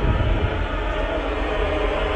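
Film-trailer score and sound design: a deep, steady rumble with a held tone above it, without a beat.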